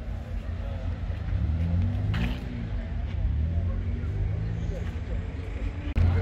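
Audi RS6 Avant's twin-turbo V8 idling at the tailpipes, a steady low engine note that grows louder and wavers from about a second and a half in.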